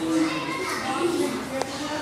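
Background chatter of children's and other visitors' voices, with one brief sharp click about one and a half seconds in.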